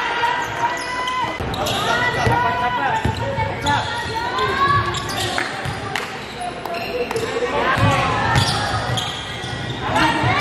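Live basketball game sound in a gym: the ball bouncing on the hardwood court and sneakers squeaking in short bursts as players cut and run, with voices calling out and the hall echoing.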